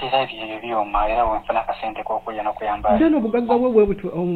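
Speech only: a person talking steadily, with no other sound standing out.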